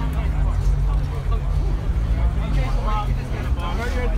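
A car engine idling, a steady low tone that drops slightly in pitch about two and a half seconds in, under the chatter of people nearby.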